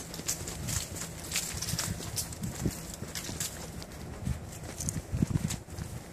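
Footsteps walking on a paved path, about two steps a second.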